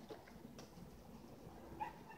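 A dog giving one short whimper near the end, over a faint outdoor background.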